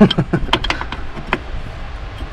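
Metal spanner clicking and clinking against an engine fitting as it is worked onto a nut in a tight spot, a handful of sharp clicks in the first second and a half.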